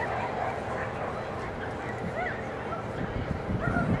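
A dog giving a few short, high yips and whines that rise and fall, over background voices, with a low rumble near the end.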